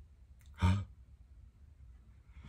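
A man's short, breathy, sigh-like exhale about half a second in, over low room hum.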